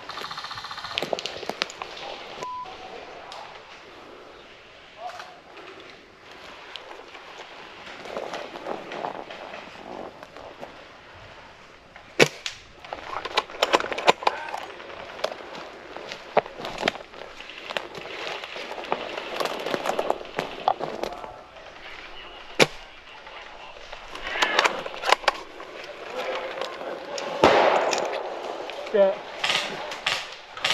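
Footsteps crunching over a needle-strewn forest floor and gear brushing through dry conifer branches, with a few sharp cracks, the loudest about twelve, fourteen and twenty-two seconds in. A distant voice shouts early on.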